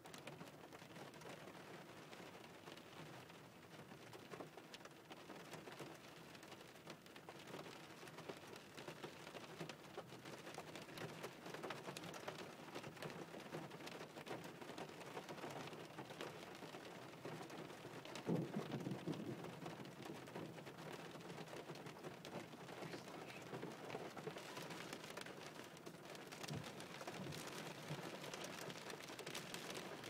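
Rain mixed with half-melted snow and graupel pattering steadily on a car's windshield, heard from inside the car. A little past the middle comes a low rumble of thunder, not too loud.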